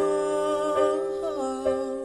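A male voice sings a slow hymn melody in a held, wavering line over sustained electric piano chords. A new chord is struck at the start, and the voice fades out near the end.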